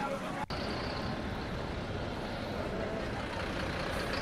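Steady outdoor street din, mostly traffic noise with faint voices in it, broken by a brief drop-out about half a second in.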